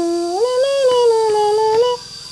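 A voice holding one long hummed note that slides up about half a second in, then sags slowly and stops at the end.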